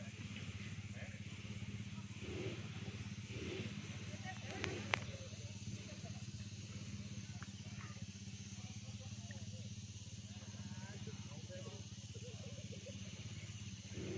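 ATV engine running at a steady low hum some way off, with a single sharp click about five seconds in.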